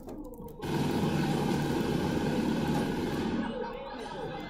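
Film soundtrack playing through a TV's speakers in a small room. Under a second in, a sudden loud rush of dense noise starts, and it eases near the end.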